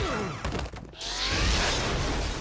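Cartoon action sound effects: a swishing whoosh that falls in pitch, then about a second in a sudden loud crash with a deep rumble as a scuffle breaks out.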